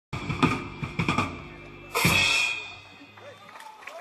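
A live blues trio ending a song: drum-kit hits, then a loud final crash about two seconds in whose cymbal rings and dies away over a low held note.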